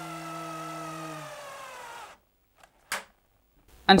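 Cordless drill-driver running under load as it drives a screw into wood, its motor whine slowly falling in pitch, stopping about two seconds in; a single short click follows about a second later.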